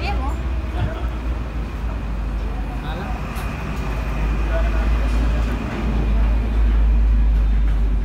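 Samosas and bhajiyas deep-frying in a large iron kadai of oil over a gas burner: an even frying hiss over a strong, steady low rumble that gets louder in the second half, with faint voices in the background.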